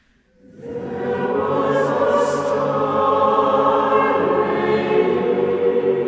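Large mixed choir singing: after a brief hush, the voices come in about half a second in and swell to full, sustained chords within a second.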